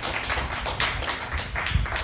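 A small audience clapping, a quick irregular patter of hand claps, with a low thump near the end.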